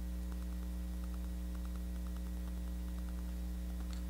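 Steady electrical mains hum, a low buzz with a stack of overtones, with a few faint, irregular light ticks over it.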